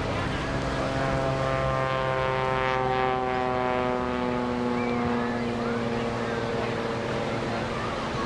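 Radial engine and propeller of a jet-boosted Taperwing Waco aerobatic biplane (the Screaming Sasquatch) droning overhead, its pitch sliding slowly down over several seconds and then fading into a low hum.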